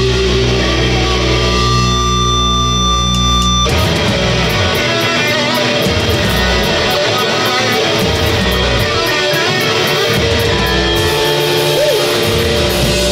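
Live punk hard rock band with electric guitars, bass and drum kit. Sustained notes ring out for the first few seconds, then about four seconds in the full band comes in together with the drums and keeps playing loudly.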